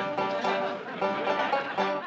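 A banjo being picked and strummed in a run of plucked notes, played badly.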